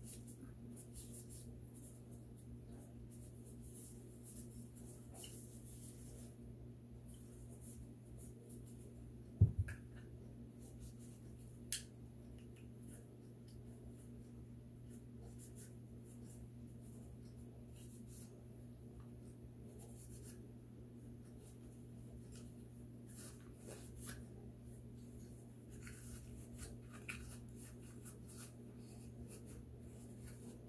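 Faint scratchy rubbing of a cloth wiping a Glock 43X pistol's polymer frame and slide, with scattered light clicks over a steady low hum. A single sharp thump about nine seconds in is the loudest sound.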